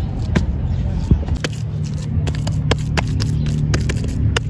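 Hands patting and slapping wet cow dung into a round dung cake: a quick irregular series of sharp wet pats, over a steady low hum.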